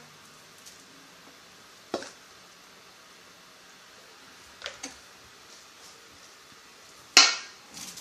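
A serving spoon knocking on a stainless-steel mixing bowl three times: a sharp knock about two seconds in, a fainter one near the middle, and the loudest near the end, which rings briefly.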